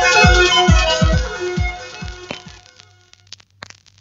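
Breakbeat hardcore track played from a vinyl record, its kick drums and synth riff fading out over about two and a half seconds. It leaves the quiet groove between tracks: scattered surface clicks and crackle over a low hum.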